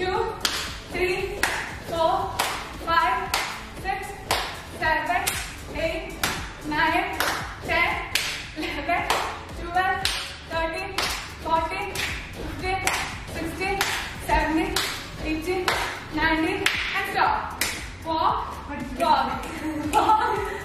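Rhythmic hand claps from side-clap jumping jacks, about two a second and steady throughout, with voices calling out in time with them.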